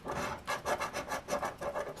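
A coin scraping the latex coating off a scratch-off lottery ticket's winning-numbers panel: quick back-and-forth rasping strokes, about five a second.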